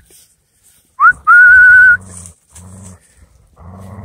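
A loud whistle about a second in: a short upward note, then a held high note with a slight waver. Under it and after it, an Airedale terrier makes low grumbling 'talking' sounds.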